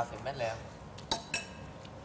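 Cutlery clinking against a plate twice in quick succession about a second in, each clink ringing briefly.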